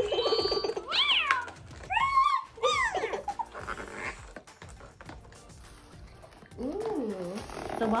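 FurReal Walkalots unicorn cat toy's built-in speaker playing electronic cat sounds. A short buzzy tone comes first, then a few rising-and-falling meows over the next two seconds.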